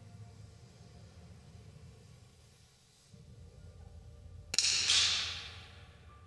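.22 smallbore target rifle firing a single shot about four and a half seconds in, its report ringing on in the hall's reverberation for about a second. Before it there is only a low steady hum.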